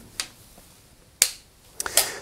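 A few sharp switch clicks, the loudest about a second in, as a washing machine's controls and then the wall socket are switched off.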